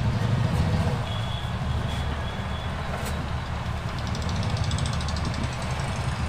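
A steady low motor rumble, with a faint high-pitched tone that comes and goes and a rapid faint ticking near the end.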